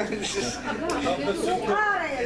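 Speech only: people talking, with voices overlapping in a large room.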